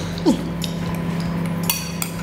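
Metal spoon scraping and clinking against a glass mug of porridge as a bonobo scoops from it, with a ringing clink near the end. A short falling squeak comes about a quarter-second in, and a steady hum lies underneath.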